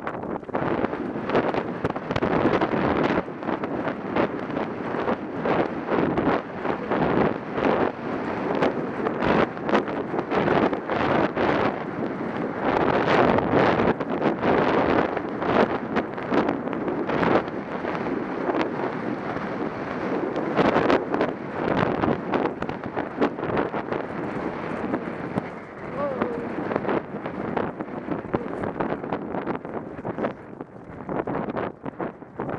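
Wind buffeting a helmet-mounted camera's microphone at a gallop, with irregular thuds from the horse's hooves and tack all through.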